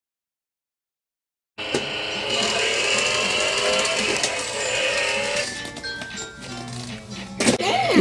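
Silence, then from about one and a half seconds in, electronic music and sound effects from a child's battery-powered toy car, sped up to double speed. It quietens in the second half.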